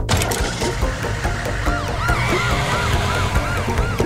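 Cartoon fire engine siren, coming in about a second and a half in as a fast rising-and-falling yelp about four times a second, over background music.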